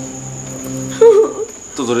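Steady high-pitched cricket chirring as a night ambience, over a low hum. About a second in, a short loud voice exclamation cuts in, and speech begins near the end.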